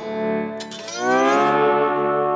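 Gretsch G5700 Electromatic lap steel guitar in open D tuning. A chord is picked about half a second in, rises in pitch over the next half second, then rings on as a held chord.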